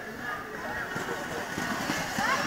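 Spectators' voices talking and calling over steady outdoor background noise, slowly getting louder near the end.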